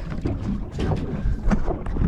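Wind buffeting the microphone on a small boat at anchor: an uneven rumbling rush, with a few irregular knocks and rustles.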